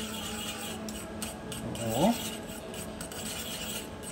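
Wire whisk scraping and stirring steadily around a small stainless-steel saucepan of boiling cherry juice as cornstarch slurry is whisked in to thicken it.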